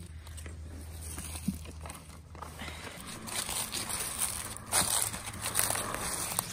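Dry leaves rustling and crackling as they are carried in buckets and tipped out, louder and denser in the second half. A low steady hum runs underneath and stops about halfway through.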